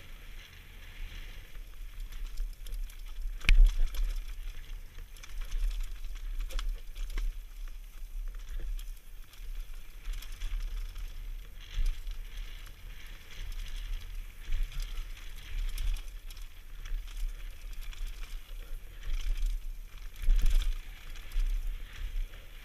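Mountain bike descending a rocky dirt trail, heard from a helmet camera: steady wind rumble on the microphone under tyres rolling over loose stones and the bike rattling. There are irregular knocks throughout, with the loudest sharp knock about three and a half seconds in.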